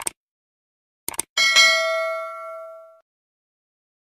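Subscribe-button animation sound effect: a mouse click, then a quick double click about a second later, followed by a bright bell ding that rings and fades away over about a second and a half.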